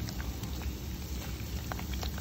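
Silicone spatula stirring harissa paste into Greek yogurt in a stainless steel bowl: soft wet scraping with scattered light ticks against the bowl, over a low steady hum.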